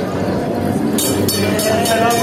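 Heritage tram rolling past at close range: a steady low running hum with wheels clattering and clinking on the rails, the clatter starting about a second in. Crowd voices are mixed in.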